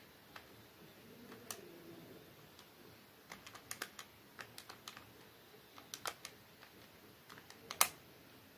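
Keys of a Casio fx-991ES PLUS scientific calculator being pressed, giving irregular runs of short soft clicks as a long formula is keyed in, with one louder click near the end.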